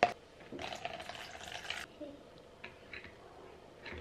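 Tea splashing and sloshing in a plastic ice-pop mould for about a second, followed by a few light plastic clicks as the mould's stick lids are handled and fitted.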